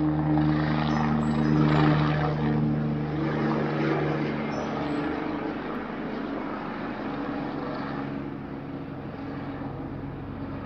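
Helicopter flying overhead, a steady rotor and engine drone with a low hum, loudest in the first couple of seconds and fading gradually as it moves away.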